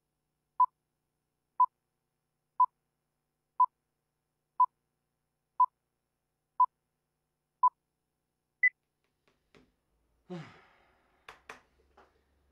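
Film-leader countdown beeps: a short beep once a second, eight times, then a single higher-pitched beep. A brief falling sound and two sharp clicks follow near the end.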